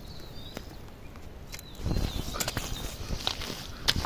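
Hands digging and scooping in wet mud: a run of squelches and slaps that starts about halfway through, after a quieter opening.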